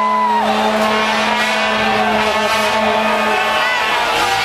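Noise of a large crowd of fans, with a horn holding one steady low note that stops a little before the end. A higher held note glides down and ends just after the start.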